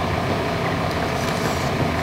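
Steady background noise, a low rumble with a hiss above it, even in level and unbroken.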